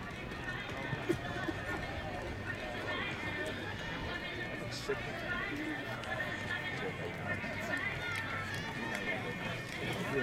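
Spectators chattering and murmuring around an outdoor jump pit, with a jumper's running footsteps on the synthetic runway at the start and a couple of sharp knocks about a second in.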